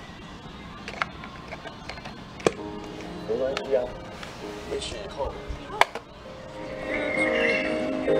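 Music playing through a small portable speaker, faint at first and louder near the end, with a few sharp clicks of cable plugs being handled.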